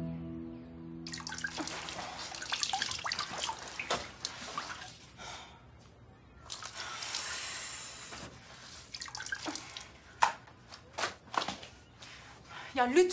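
A wet floor cloth being swished, wrung and dripped into a bucket of water during hand scrubbing, with uneven splashing and dripping. A few sharp knocks come near the end, and a music note fades out at the start.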